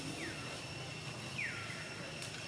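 Baby long-tailed macaque squeaking twice, two short whimpers that each fall in pitch, the second louder, as it begs to nurse. A steady high whine runs underneath.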